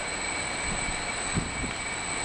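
Steady indoor room noise with a thin, constant high-pitched whine running through it and a few faint soft knocks.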